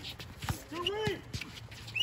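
Players' voices calling out on the court, with a single sharp knock about half a second in.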